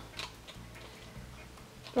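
Faint small ticks and handling noise from a plastic circle craft punch and a card cutout being fiddled into position, over a low faint hum.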